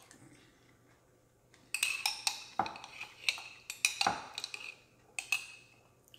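A metal spoon clinking repeatedly against a glass mason jar as it scoops milk-soaked cookie from the milk. The clinks start about two seconds in, about a dozen sharp clicks over some four seconds, each with a brief glassy ring.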